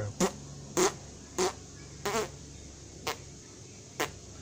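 A man forcing about five short puffs of air out through pursed lips, each a brief pop, with the gaps between them widening. It is reverse packing: the throat is used as a pump to push out air still left after a full exhale.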